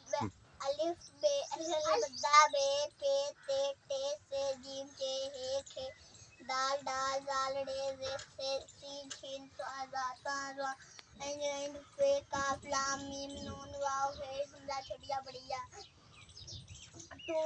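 A young boy singing a chant-like tune in a run of short held notes, pausing briefly between phrases about six and eleven seconds in.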